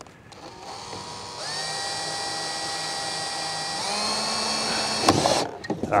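Cordless drill running into the corner of a wooden frame. Its motor whine rises as it spins up, holds steady, then steps up in speed about four seconds in. A loud rattling burst near the end cuts it off.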